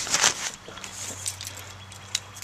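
Rustling and handling noise as a baby is lifted from a car seat, loudest in the first half-second, then quieter with a few faint clicks over a low steady hum.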